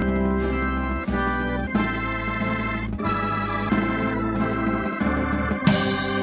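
Two-manual drawbar organ of the Hammond type playing held chords over a low bass line, moving to a new chord every second or so.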